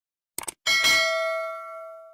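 Sound effect of a quick mouse double-click, then a bright bell ding that rings out and fades over about a second and a half: the click-and-notification-bell sound of a subscribe animation.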